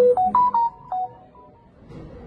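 Mobile phone ringtone: a short run of quick electronic notes stepping up and down in pitch, lasting about a second.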